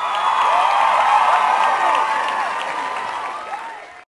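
A crowd cheering and clapping, many voices rising and falling together; it swells quickly, holds, then fades and cuts off near the end.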